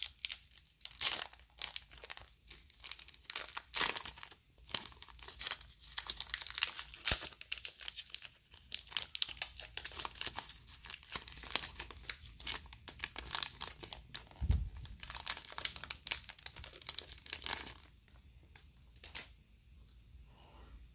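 Foil booster pack wrapper of a Pokémon trading card pack being crinkled and torn open, a dense run of sharp crackles, with a low thump about two-thirds of the way through. The crackling dies down a couple of seconds before the end.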